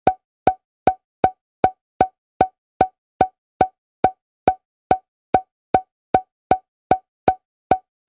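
An edited-in pop sound effect repeated at an even pace, about two and a half times a second. Each pop is short, with a quick pitched tone, and there are about twenty in all with silence between them.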